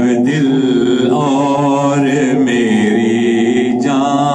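A man singing an Urdu naat, drawing out long, wavering notes in a chant-like melody with no instruments heard.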